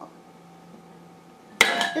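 A small glass bowl dropped into a large glass mixing bowl: one sharp glass-on-glass clink about one and a half seconds in, ringing briefly. Before it there is only a faint steady hum.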